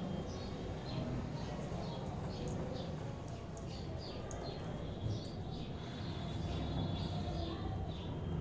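Small birds chirping in the background: short, high, falling chirps repeating several times a second, over a faint low steady room noise.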